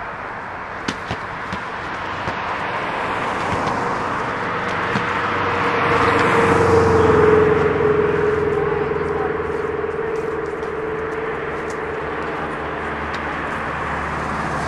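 A motor vehicle passing: its noise swells to a peak about seven seconds in and fades again, with a steady hum that drops slightly in pitch as it goes by. A few light knocks sound in the first two seconds.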